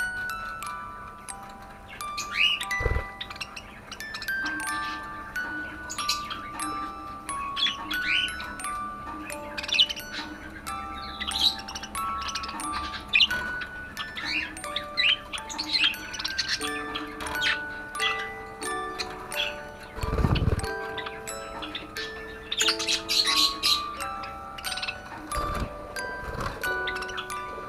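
Budgerigars chirping and warbling over gentle background music of chime-like notes. Three dull low thumps come through: one a few seconds in, one about two-thirds of the way through and one near the end.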